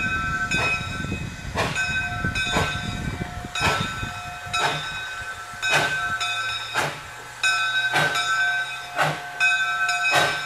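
Two-foot gauge steam locomotive pulling slowly away with a passenger train, its exhaust chuffing in even beats about once a second. A low rumble in the first few seconds gives way to a steady low hum, with steady high tones over the beats.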